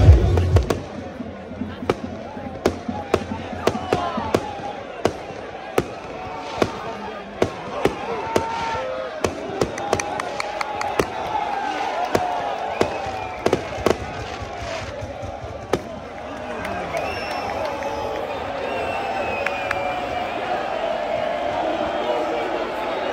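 Fireworks going off in a string of sharp bangs, about one or two a second, which stop about sixteen seconds in. Under them a crowd of football supporters is chanting and singing, and it grows louder near the end.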